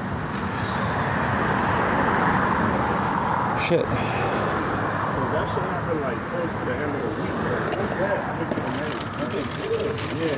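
Road traffic going past on the street, a steady rush that is loudest in the first few seconds and then eases.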